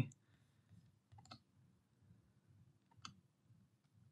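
Near silence broken by faint computer mouse clicks: a couple about a second in and one about three seconds in.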